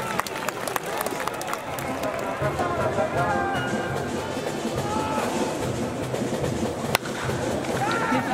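Baseball stadium crowd noise with a cheering section's music and voices, and a single sharp crack of a bat hitting the ball about seven seconds in.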